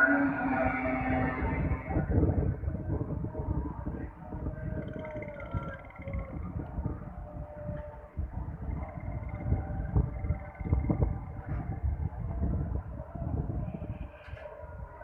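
Fajr azan (call to prayer) carried from a mosque loudspeaker, a man's voice holding long drawn-out melodic notes, loudest in the first couple of seconds, over a steady low rumble.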